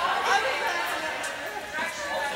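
Indistinct chatter of several voices in a large indoor tennis hall.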